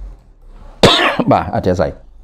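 A man coughing into his hand: a sudden hard cough just under a second in, followed by about a second more of coughing.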